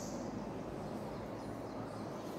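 Faint steady background noise with a low hum, the room tone of an unspeaking classroom recording.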